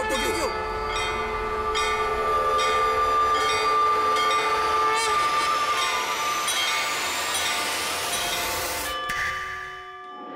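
Dramatic background score: a loud held chord of steady tones over regular drum strikes about every three-quarters of a second, with a rising sweep in the second half. The music dips away near the end.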